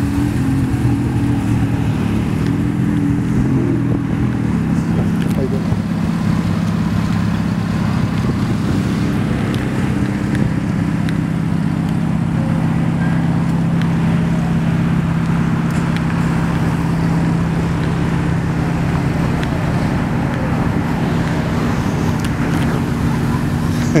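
Steady car engine and road noise from a line of cars driving past on a road.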